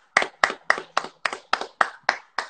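Hands clapping in a steady rhythm, about four claps a second, nine or so sharp claps in a row.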